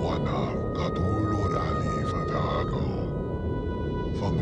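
Eerie collage-video soundtrack: several steady high electronic tones held over a dense low rumble, with warped, gliding voice-like sounds moaning through it.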